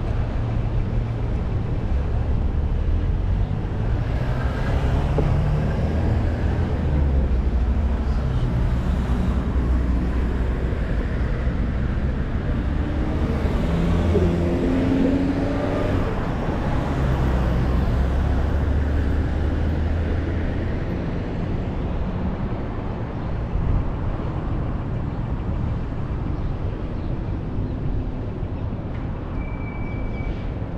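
Road traffic on a city street: cars driving past over a steady low rumble. About halfway through, a vehicle's engine rises in pitch as it speeds up.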